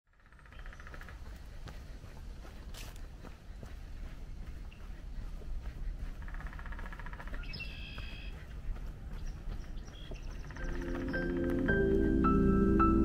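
Outdoor ambience of a low, steady wind rumble with a few bird calls, then soft keyboard music with piano- and vibraphone-like notes fading in about eleven seconds in and getting louder.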